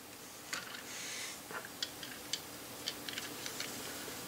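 Hands picking up and handling a small LEGO model built around the EV3 infrared remote: faint, scattered plastic clicks, with a brief rustle about a second in.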